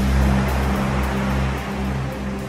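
Ocean waves washing over a low sustained musical tone as the percussion and piano melody fall away, gently fading.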